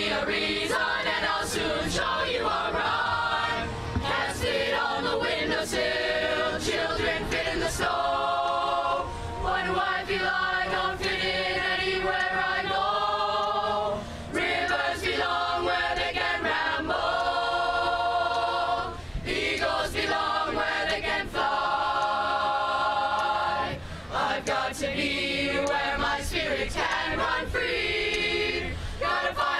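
A boys' choir singing together, in long held notes, in phrases of about five seconds with brief breaths between them.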